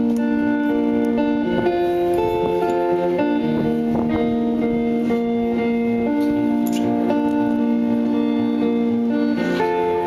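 A band playing live: acoustic guitar under long, steady held notes that step to a new pitch every second or two, the opening of a song before any singing.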